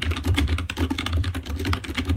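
Typing on a computer keyboard: a fast, continuous run of keystrokes.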